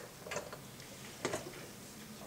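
A few light taps of a pen on an interactive whiteboard as an equation is written: one at the start, another a moment later, and a quick pair a little past the middle, over quiet classroom room tone.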